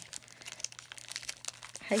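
Plastic shrink wrap on a paper pad crinkling as it is handled and pulled at, a fast irregular crackle.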